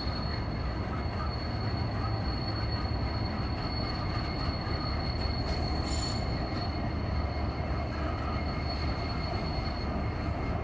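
Diesel-led freight train rolling across a steel truss bridge: a steady low rumble of locomotives and wheels, with a thin, high, steady wheel squeal over it.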